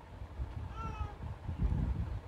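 A woman's brief high-pitched whimper while crying, slightly falling in pitch, over a low background rumble.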